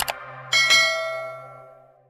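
A short click sound effect, then a notification-bell chime sound effect about half a second in, struck twice in quick succession and ringing out as it fades away.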